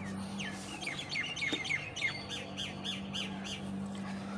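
A bird calling in a quick series of short, high chirps, each falling in pitch, about three or four a second, stopping near the end.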